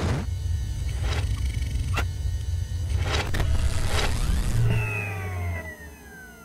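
Synthesized end-screen sound effects: a steady low rumble with sharp hits about once a second, then falling tones near the end that fade away.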